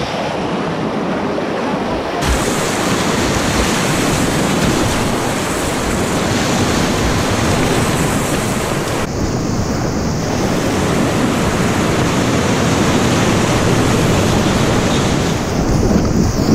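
Loud, steady rush of whitewater rapids close around a kayak, with spray splashing over the boat and wind noise on the microphone.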